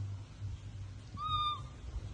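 Infant monkey giving one short, thin, high-pitched call a little over a second in, lasting about half a second.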